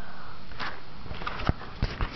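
Handling noise from the video camera being moved: a few sharp knocks and clicks over a faint hiss, the loudest about a second and a half in.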